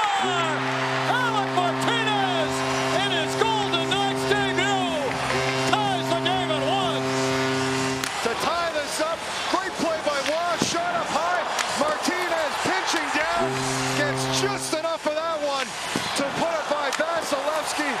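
Arena goal horn blaring in one long steady blast of about eight seconds, then a short second blast later on, over a loudly cheering hockey crowd celebrating a home goal.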